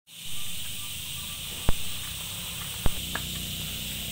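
Steady high hiss with two sharp clicks a little over a second apart, followed by a fainter tick.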